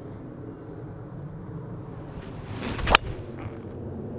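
Golf driver swishing through the downswing, building for under a second, then one sharp crack as the clubface strikes the ball about three seconds in.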